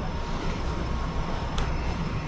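Steady low rumble of room background noise, with one short sharp click about one and a half seconds in.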